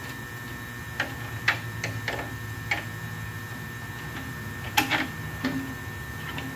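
Small aluminum sheet-metal parts clicking and scraping against each other as a trimmed piece is worked into its slot by hand. The clicks are light and irregular, a handful in the first three seconds and a louder one near the end, over a steady low hum.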